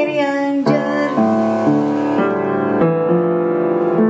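Yamaha upright piano played in chords, a new chord struck about twice a second. A sung note trails off in the first half second.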